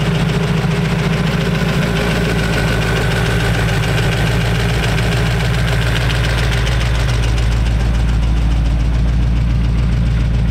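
Supercharged Ardun-headed Ford flathead V8 in a 1932 Ford roadster idling steadily, not yet warmed up.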